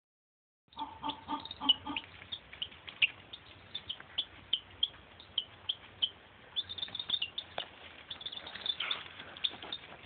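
Baby chicks peeping: many short, high peeps, several a second, starting just under a second in and busiest near the end. A few lower, pulsed sounds join in during the first two seconds.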